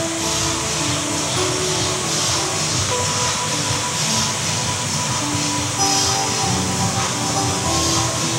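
Background music of sustained, held chords whose notes shift every second or so, playing under a pause in speech.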